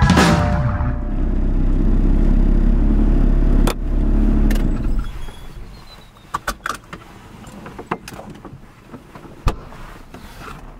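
A final musical hit at the start, then an old car's engine running with a low rumble that cuts off about five seconds in. After it come a few scattered sharp clicks and knocks.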